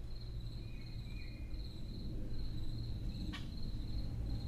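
A quiet passage of a dark ambient UK garage electronic track: a steady low bass drone under a pulsing high cricket-like chirp, with one sharp click a little after three seconds in.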